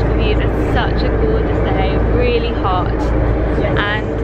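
Tour boat's engine running steadily with a constant low drone, with people's voices over it.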